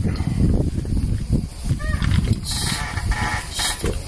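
Loose sheets of paper rustling and being handled, with irregular low knocks and rumble against the microphone, and papers crackling more loudly in the second half.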